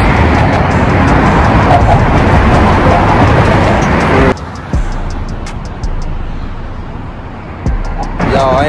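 Loud, steady rushing of wind on a phone microphone, with a low rumble of traffic, on an open bridge walkway. About four seconds in it cuts to a much quieter stretch that slowly fades, with a few faint ticks.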